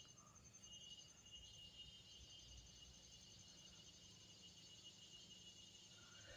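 Near silence, with a faint, thin, high-pitched trill running steadily in the background, like distant insects.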